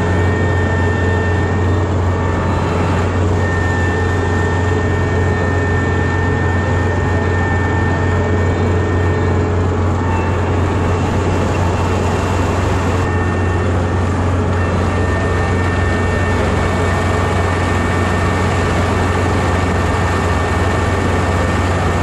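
A Kubota Dynamax REVO combine harvester running steadily while it cuts rice: a constant low engine drone with a steady high whine on top.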